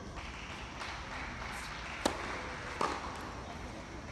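Tennis serve struck with a sharp racket-on-ball pop, followed about three-quarters of a second later by a second, duller pop as the serve is returned.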